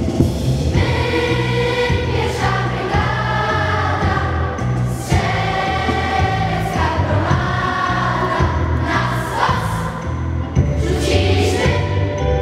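A choir singing, with steady low accompaniment underneath.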